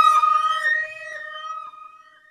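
Electric guitar feedback: one steady high squeal left ringing on its own after the band stops, wavering slightly and fading away.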